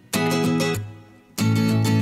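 Intro music of strummed guitar chords in short repeated bursts, about one every second and a quarter.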